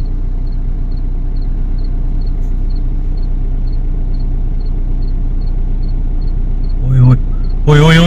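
Car engine idling, heard from inside the cabin as a steady low hum. A short burst of a man's voice comes near the end.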